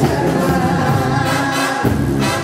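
Live band music with singing, backed by brass and congas.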